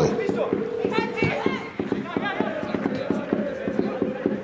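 Field sound from a football match played without spectators: players' calls and shouts on the pitch, over a steady hum and scattered small clicks.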